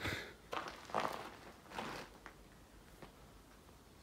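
A few soft footsteps and breaths inside a small enclosed stone chamber, dying away after about two seconds.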